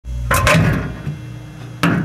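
Microwave oven door popped open with a sharp clunk, followed by a second knock near the end, over a steady low hum.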